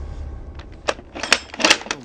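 A low rumble fading away, then a quick run of about six sharp clicks and taps in the second half.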